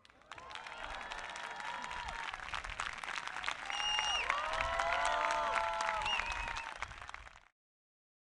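Concert audience applauding, with voices calling out over the clapping; the applause swells, then fades and cuts off suddenly about seven and a half seconds in.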